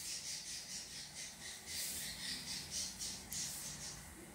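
Soft, wet squelching of a runny egg-and-oil cake batter being mixed by hand in a plastic bowl, in a quick, even rhythm of several squishes a second.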